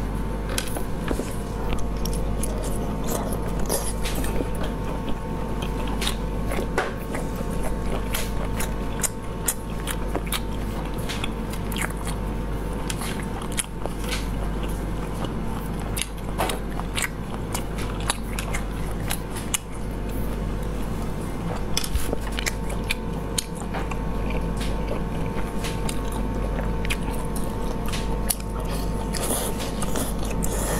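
Close-miked eating sounds: biting and chewing stewed snails, with many sharp clicks throughout as the snail meat is pulled from the shells and chewed.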